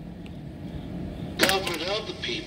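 Low steady rumble inside a car. About one and a half seconds in there is a sharp knock, followed by a voice.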